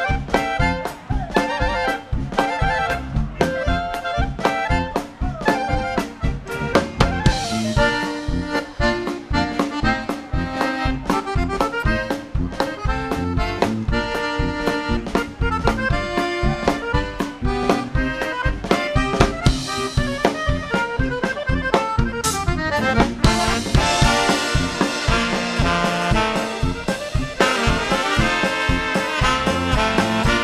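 A live polka band playing a Dutchman-style polka, with an accordion lead over a steady two-beat bass-and-drum rhythm. The band fills out brighter and fuller near the end.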